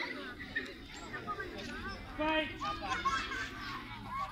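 Many children's voices chattering and calling out at once, several overlapping.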